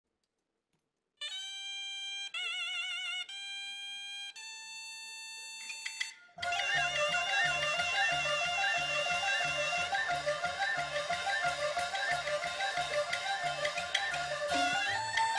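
Traditional Chinese opera accompaniment. After a moment of silence, a solo melody instrument holds a few long notes, one with vibrato. About six seconds in, the full ensemble enters with a steady percussion beat.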